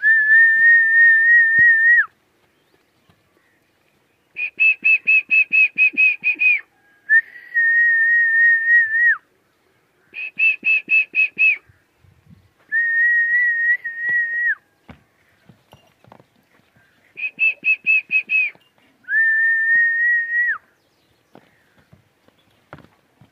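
A person whistling in a repeating pattern: long held notes that each fall away at the end, alternating with quick warbling runs of about six short notes a second, seven phrases in all.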